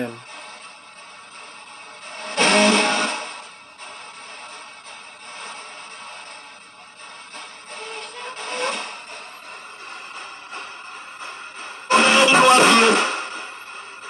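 Spirit box sweeping through radio stations: a steady hiss of static broken by short, louder snatches of station audio, mostly music. The loudest snatches come about two seconds in and for about a second near the end, with a fainter one near the middle.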